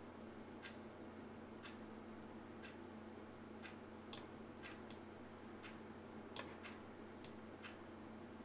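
Quiet room tone with a low steady hum and faint sharp clicks, most about once a second, with a few slightly louder ones scattered between.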